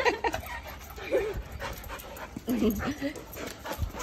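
Two goldendoodles play-fighting, with short dog vocal noises about a second in and again around two and a half seconds in, and scuffling between them.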